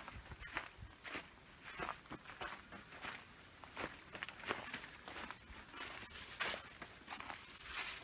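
Footsteps crunching through dry fallen leaves at a walking pace, about two steps a second.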